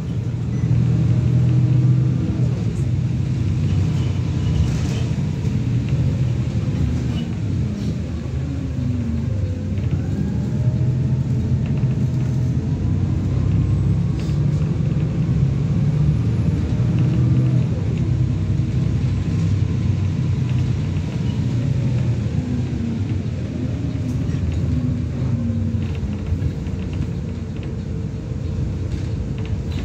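Stagecoach single-decker bus heard from inside while it drives, its engine rising and falling in pitch several times as it speeds up and slows, over a steady low rumble.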